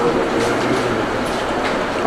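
Steady, even background noise in a hall: an unbroken hiss with a low rumble beneath it, from the room and its sound system.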